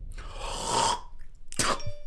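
A person hawking up phlegm with a long, rough rasp in the throat, then spitting once, sharply, over a second later.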